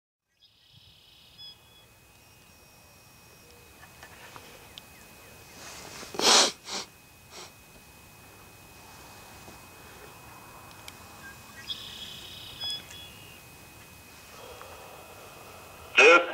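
Federal Signal Modulator 6024 electronic siren's drivers squealing and hissing to life: a faint steady high whine and hiss, with two short electronic squeals, one near the start and one about twelve seconds in, and a sharp burst of noise about six seconds in. The hiss is heavy, which the recordist takes as a sign that some of the drivers may be bad.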